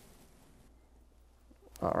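Near silence: quiet room tone with a faint low hum, then a man starts speaking near the end.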